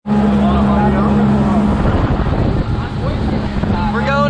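Motorboat running under way: a steady engine hum over the rush of wind and water, with wind on the microphone. The hum drops back a little under two seconds in, leaving mostly the wind and water rush, with faint voices.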